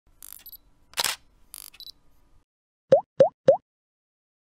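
Logo intro sound effects: a few short swishes and clicks in the first two seconds, the loudest about a second in, then three quick plops near the end, each rising in pitch, about a third of a second apart.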